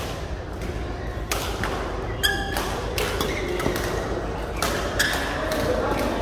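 Badminton rackets striking a shuttlecock during a doubles rally: a run of sharp hits at uneven intervals. A brief squeak of court shoes comes a little past two seconds in.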